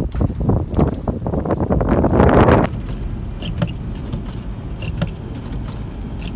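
A car moving slowly across a snowy parking lot: a steady low rumble of engine and tyres, with a louder rush of noise about two seconds in.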